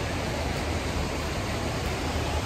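Steady rushing noise with a low rumble underneath and no distinct events: outdoor background noise picked up by a hand-held phone while walking.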